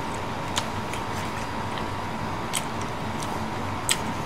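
A man chewing a mouthful of takeout noodles, with a few short, light clicks over a steady background hiss and a faint hum.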